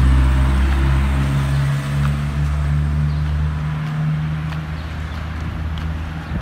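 A motor vehicle's engine running with a steady low hum that slowly fades.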